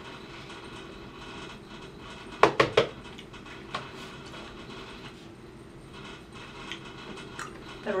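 Cardboard sweet box of Jelly Babies being handled and tipped, with a quick cluster of three or four sharp clicks about two and a half seconds in and a lone click a second later, over a low steady background.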